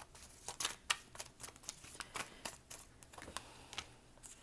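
Tarot cards being shuffled by hand: a quiet run of quick, irregular card snaps and clicks.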